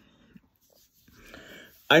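A pause in a man's speech: near silence, then a soft breath drawn in about a second in, just before he starts talking again at the very end.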